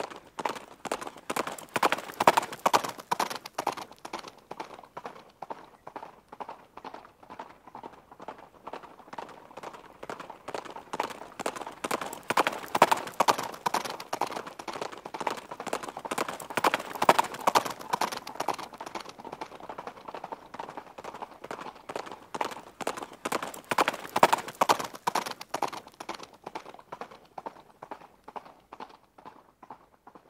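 Horse hooves clip-clopping on a hard surface in a quick, dense rhythm that swells and eases several times, then fades out near the end.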